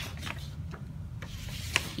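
Sticker album being handled and turned: stiff paper pages rubbing and shifting, with a couple of light clicks, one right at the start and one near the end.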